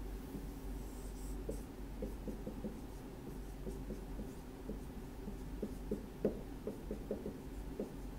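Dry-erase marker writing on a whiteboard: a quick, irregular run of short strokes and taps as the symbols are drawn. The strokes start about a second and a half in, with a low steady hum underneath.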